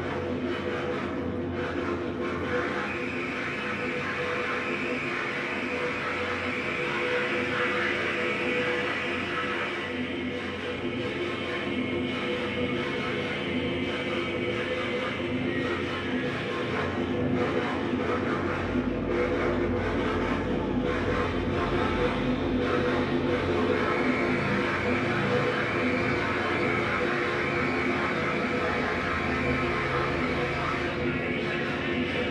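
Live dark-ambient noise music from electronics: a dense, steady drone of sustained low tones under a harsh hissing noise layer, with a deep rumble joining a little past halfway.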